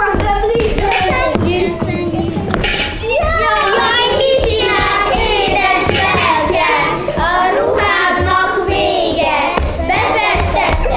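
A group of young children singing a song together, with a few sharp knocks among it.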